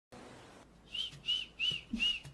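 A person whistling a run of short notes, each rising and then falling, about three a second, starting about a second in.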